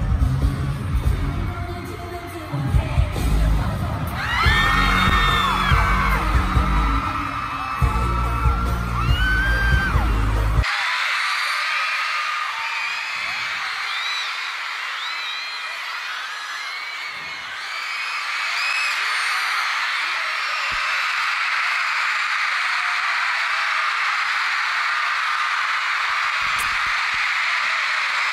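Pop music with a heavy, regular bass beat and a voice over it, which cuts off abruptly about ten seconds in; after that, a large concert crowd screams and cheers steadily.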